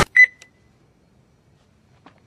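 A single short, high electronic beep about a fifth of a second in, fading out quickly, followed by near silence.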